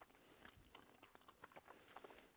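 Very faint chewing of a mouthful of chicken: soft, irregular little clicks with no rhythm.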